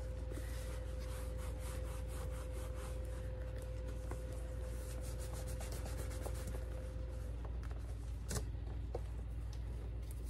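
Cloth towel rubbing a leather Coach handbag and its strap while working conditioner into the dry leather: a run of quick, soft rubbing strokes. A faint steady hum runs under it until about seven seconds in, and there is a single click near the end.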